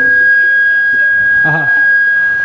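Public-address microphone feedback: a single steady, high-pitched whistling tone from the stage PA, held throughout.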